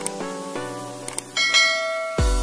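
Outro music with bell-like pitched notes, a few short clicks, and a bright bell chime about one and a half seconds in: the notification-bell ding of a subscribe-button animation.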